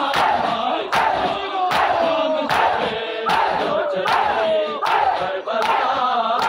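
A large crowd of men beating their chests in unison (matam), one sharp massed slap about every 0.8 s, over many male voices chanting the noha together.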